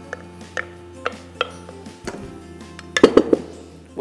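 Kitchenware clinking against a cooking pot as banana purée is poured from a glass blender jug into the pudding: a few single clinks, then a louder cluster of clinks about three seconds in, over soft background music.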